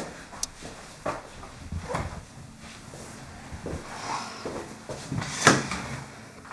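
Light household knocks and clatters, such as kitchen drawers, cupboards or dishes being handled, about five separate bumps, the sharpest near the end.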